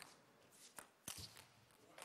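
Table tennis rally: a few faint, sharp clicks of the ball striking the bats and bouncing on the table, two of them close together just past a second in.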